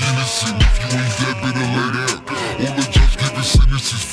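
Hip hop track: rapping over a beat with deep 808 bass hits.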